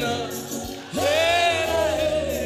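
A woman singing a gospel song into a microphone over instrumental accompaniment, holding one long note in the second half.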